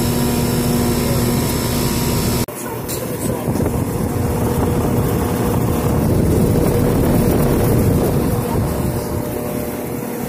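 A steady hum with a low tone, then an abrupt cut about two and a half seconds in to a 1994 Rheem Classic 2-ton central air conditioner's outdoor unit running: a steady rush of air from the condenser fan over the hum of the compressor.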